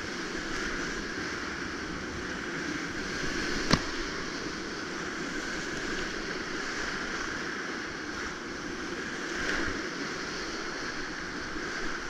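Whitewater rapids at high flow, about 3500–4000 cfs, rushing and breaking around a kayak in a steady roar of water. A single sharp knock comes about four seconds in.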